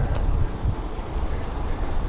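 Steady rush of wind and road rumble from a bicycle riding along at speed, with wind buffeting the microphone.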